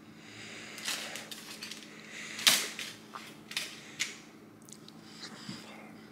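A few sharp clicks and knocks of kitchen handling as a slice of cake is taken. The loudest comes about two and a half seconds in, with smaller ones before and after.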